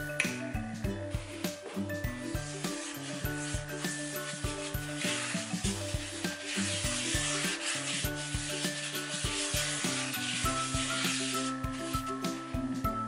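Steady rubbing of an oiled pad wiped across the surface of a nonstick frying pan. It starts about two or three seconds in and stops just before the end, over background music with plucked notes.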